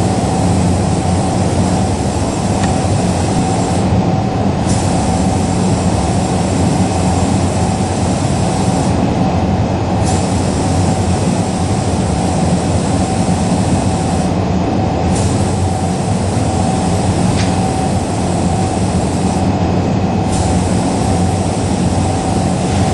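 A loud, steady mechanical rumble with a constant hum in it. The high hiss drops out briefly about every five seconds.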